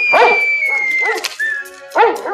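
A dog in the film's soundtrack yapping in quick short barks, about three a second, under a long held high note of film music that ends a little after a second in.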